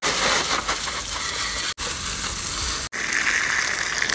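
Pressurised water spraying from a hose wand onto a motorcycle, a steady hiss with two very short gaps.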